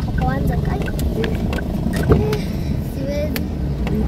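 Car cabin noise while driving: a steady low engine and road rumble heard from inside the car.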